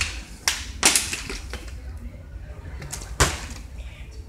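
A few light knocks from the plastic water bottle being handled, then one sharper thump about three seconds in, as the partly filled bottle is flipped and lands on a leather chair seat.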